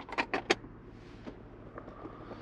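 Plastic fold-out cup holder in a car's lower dash being pushed shut by hand: a quick run of about four plastic clicks in the first half second as it folds and latches.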